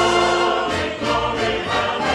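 Choir singing held chords over orchestral accompaniment, the chord changing about two-thirds of a second in.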